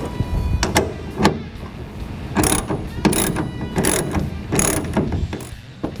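Metal clamp hardware being tightened onto a pickup's bed rail, heard as a run of short ratcheting strokes.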